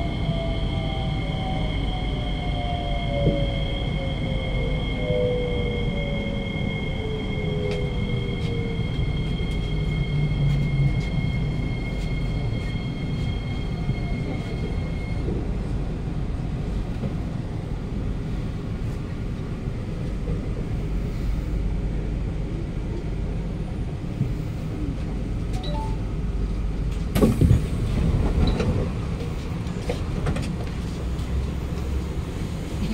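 Kawasaki–CRRC Sifang C151A metro train braking into a station, heard from inside the car: the traction motor whine falls steadily in pitch over the first nine seconds as the train slows. Two steady high tones cut off about halfway as it comes to a stop, over a low rumble. A loud clatter near the end comes as the doors open.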